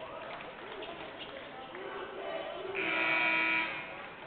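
Basketball arena ambience with crowd chatter and voices, then about three seconds in an electronic arena horn sounds loud and steady for about a second.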